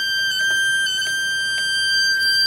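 Bi-toroid transformer's ferrite cores giving off a steady, annoying high-pitched whine under pulsed drive, a single tone with a row of overtones above it. The pitch steps slightly twice, with faint clicks.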